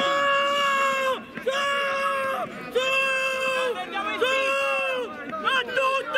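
A single high-pitched voice shouting a long, drawn-out "Goal!" in celebration, four times in a row, each call held about a second and dropping in pitch at its end, followed by a couple of shorter shouts near the end.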